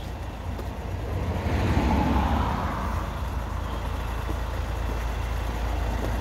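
Low, steady rumble of an idling vehicle engine, with a broad rush of road traffic swelling up about a second and a half in.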